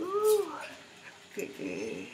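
A woman vocalizing without words: two drawn-out calls that rise and fall in pitch, one right at the start and a second about one and a half seconds in.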